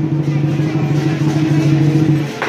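Lion dance drum played in a fast, sustained roll that gives a steady deep tone, with cymbals clashing over it.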